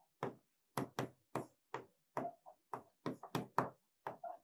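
A stylus tapping and clicking against the glass of an interactive touchscreen board as letters are handwritten: about a dozen short, irregular taps, roughly three a second.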